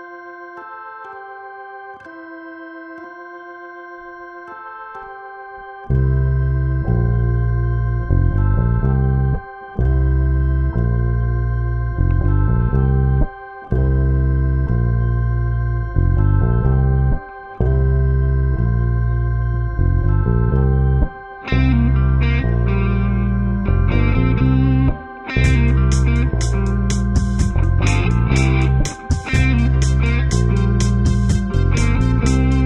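Layered backing track: an electronic organ sound from a keyboard holding chords, joined about six seconds in by a loud bass guitar line that pauses briefly between phrases. Near the end an electric guitar comes in with rhythmic chords.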